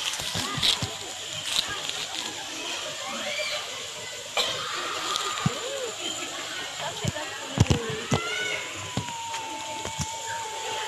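Indistinct voices calling and water sloshing and splashing, with scattered sharp knocks and a long steady tone near the end.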